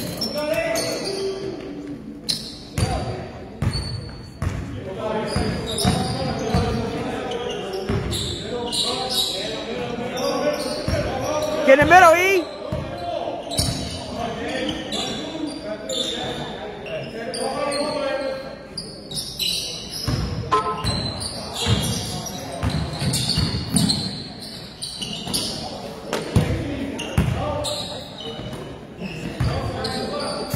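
Basketball bouncing and dribbling on a gym floor during play, a run of dull thumps that echo in a large hall, with indistinct voices from players and spectators.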